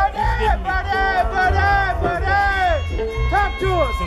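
Live electric blues guitar soloing with a towel draped over the neck: a run of bent notes that swoop up and down, over a band's bass and drums.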